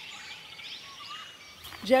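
Birds chirping and calling in the background, many short high overlapping calls, over a faint outdoor hum.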